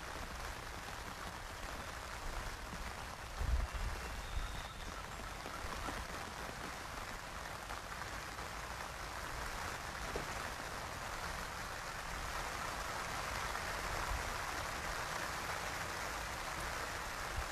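Steady outdoor ambience at a pond: an even hiss of natural background noise that swells slightly toward the end, with a brief low thump about three and a half seconds in.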